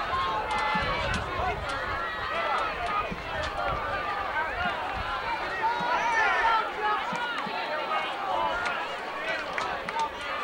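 Crowd chatter: many voices talking over one another, none standing out, with scattered small clicks.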